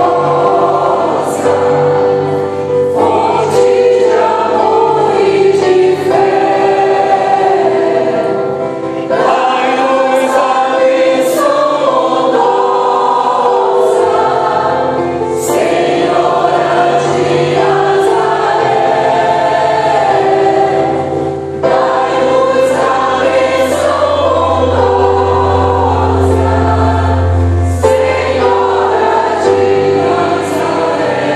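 Mixed choir of men's and women's voices singing a hymn in parts, accompanied by a digital piano. The singing moves in phrases, with short breaks between them about every five or six seconds.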